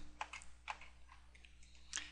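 A few faint clicks of a computer keyboard and mouse, most of them in the first second and one more near the end.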